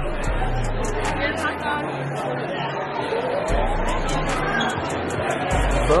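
Chatter of many people in a busy indoor shop, with faint music in the background.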